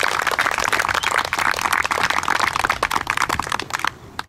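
A small crowd applauding, a dense patter of hand claps that stops abruptly at the end.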